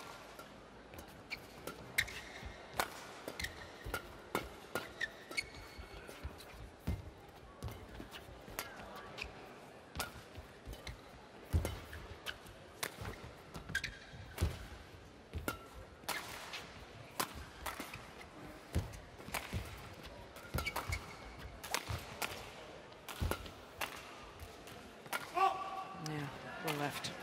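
Badminton rally: rackets strike the shuttlecock in sharp hits about once a second, with short squeaks of shoes on the court between the shots.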